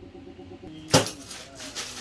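A single sharp knock about a second in, then soft rustling as someone gets up from a chair.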